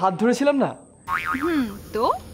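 A comic 'boing' sound effect with a wobbling, gliding pitch, starting about a second in, just after a man says a short word.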